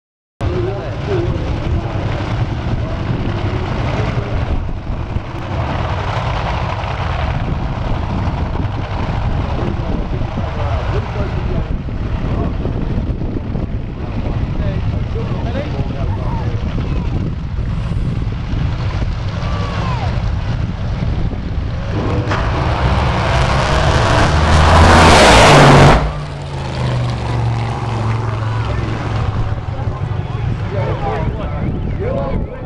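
Drag racing car making a full-throttle pass down the strip: its engine noise swells over about three seconds to a very loud, harsh peak, then falls away abruptly. Before it, a steady low rumble.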